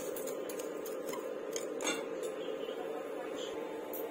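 Wooden chopsticks tapping and scraping against the bowl while turning bread in breadcrumbs: a few scattered light clicks over a steady low hum.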